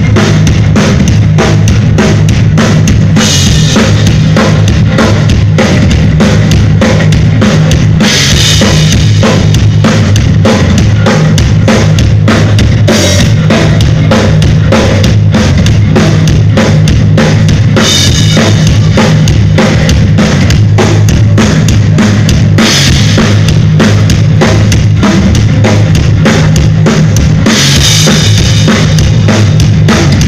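Live heavy metal band playing loud, with a fast, pounding drum beat of bass drum and snare under heavy guitars. Cymbal crashes come roughly every five seconds.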